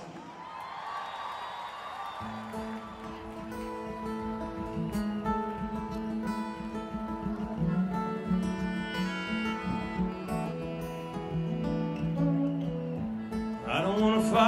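Live band playing a song's instrumental intro: strummed acoustic guitar over held bass notes, coming in about two seconds in and building up.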